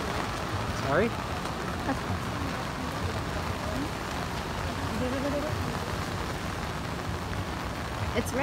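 Heavy rain falling in a steady hiss on umbrellas and wet pavement, with faint voices now and then.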